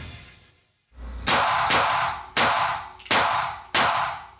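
Smith & Wesson M&P380 Shield EZ .380 ACP pistol fired about five times in steady succession, roughly two-thirds of a second apart, each shot ringing and echoing off the walls of an indoor range. Music fades out at the start, and a low thump comes just before the first shot.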